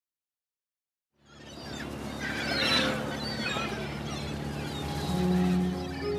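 Silence, then about a second in an ambience fades in: birds calling with short gliding chirps over a low steady drone. Held music notes come in near the end.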